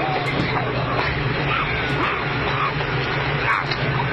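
Noisy dashcam audio: a steady hiss over a low, even hum, with faint indistinct wavering sounds that could be distant voices.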